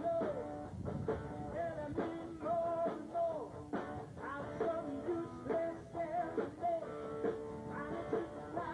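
A live band playing a rock and roll number, with guitar and drums under a sliding melody line.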